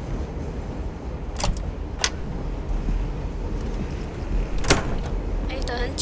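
Three sharp door clicks, about a second and a half in, at two seconds and near five seconds, over a steady low rumble; a voice starts just before the end.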